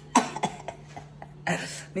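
A woman's short cough just after the start, then a breathy exhale about three-quarters of the way through.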